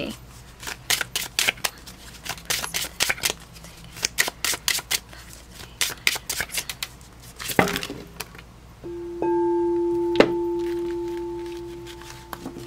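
A deck of tarot cards being shuffled by hand, a fast run of clicks and rustles. About nine seconds in, a struck bell-like tone rings out and slowly fades, with a single card tap a second later.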